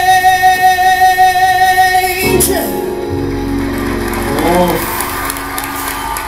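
A male singer holds one long sustained note over the band, cut off about two seconds in, then the band's final chord rings on.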